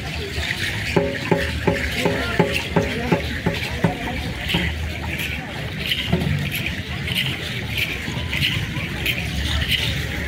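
A drum struck in a steady run of about a dozen beats, around three a second, during the first four seconds, over the chatter of a crowd of people.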